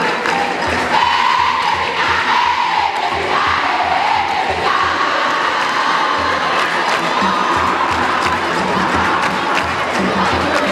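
A large crowd of schoolgirls singing a jama chant together in unison, the sung line holding and wavering, over a steady low beat about twice a second.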